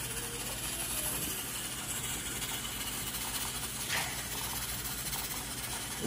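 Wooden spoon stirring sugar as it melts into caramel in a stainless steel pot over a gas flame: a steady low hiss with stirring, and a single light knock about four seconds in.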